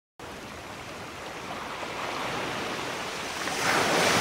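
Sea surf washing in, a steady rushing that swells louder toward the end.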